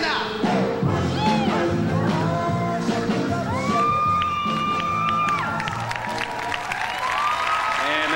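Swing dance music with an audience cheering and whooping over it.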